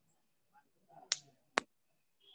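Two sharp clicks about half a second apart over faint room tone.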